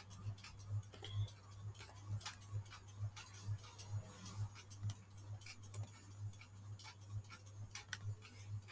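A steady low ticking, about two ticks a second, with scattered light computer keyboard and mouse clicks as a number is typed.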